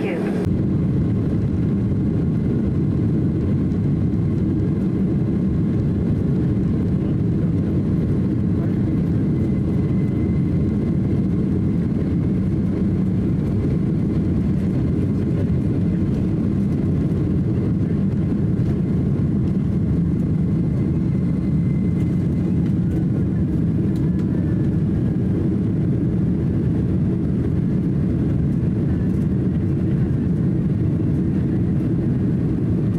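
Boeing 767-300's twin General Electric CF6 turbofan engines at takeoff thrust, heard from inside the cabin: a steady loud roar and rumble as the jet rolls down the runway and lifts off, with a faint high engine whine through the middle.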